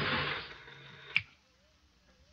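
Radio-drama sound effect of a shortwave ham radio link: a hiss of static fades out, then a single sharp click a little after a second in, and the line goes dead.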